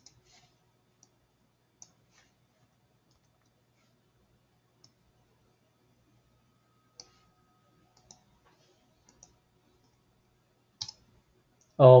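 Sparse, faint clicks of a computer mouse, spaced a second or more apart, with a louder double click about a second before the end. A man's voice exclaims 'Oh' right at the end.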